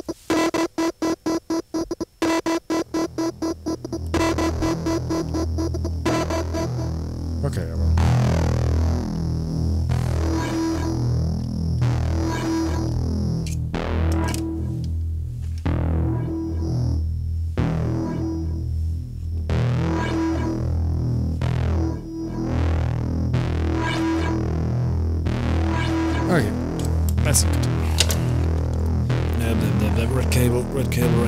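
Live techno played on synthesizers. A fast stuttering pulse in the first few seconds gives way to a steady bass pulse, with a short synth note repeating about once a second and crisp percussive ticks over it.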